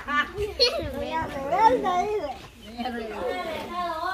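Voices: children's chatter mixed with people talking.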